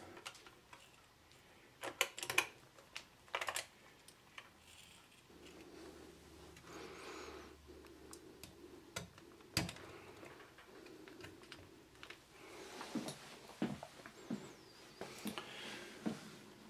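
Quiet, scattered metal clicks and taps from an LGA1366 CPU socket as its steel load plate is lowered over the processor and the retention lever pushed down and latched, with one sharper click a little over nine seconds in. Soft handling noise lies between the clicks.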